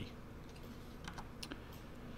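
Faint, scattered clicks of computer keys being tapped, a handful of light strokes.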